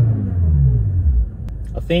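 BMW M6 Gran Coupé's 4.4-litre twin-turbo V8 falling back from a free rev, its pitch dropping over the first second and then settling to a steady idle.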